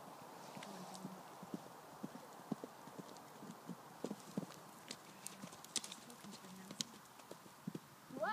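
Faint hoofbeats of a pony cantering on dry, firm grass, an uneven run of dull thuds that grows louder from about halfway through as the pony comes nearer.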